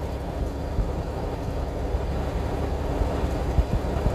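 Steady low rumble of engine and road noise inside a moving truck cab, with a brief bump near the end.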